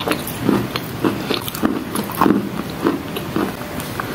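Close-up chewing of a mouthful of wet chalk: a steady run of crunchy chews, about two a second, with gritty crackles.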